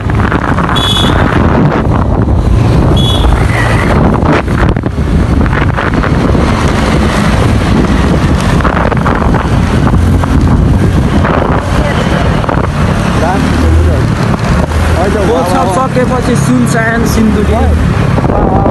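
Wind buffeting the microphone over engine and traffic noise while moving along a street, with voices calling out near the end.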